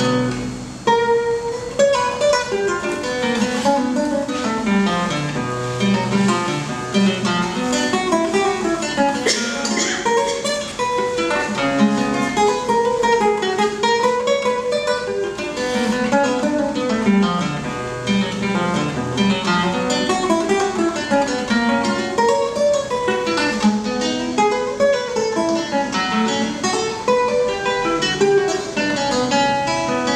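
Solo acoustic guitar music: flowing runs of plucked notes that rise and fall.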